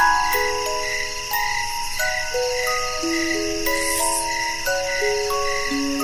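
Music box playing a slow, gentle melody of single plucked notes that ring and fade, over a steady background of chirping crickets.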